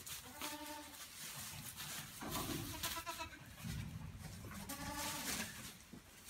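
Boer goat kids bleating: three calls about two seconds apart, with rustling of the dry leaf bedding under their hooves.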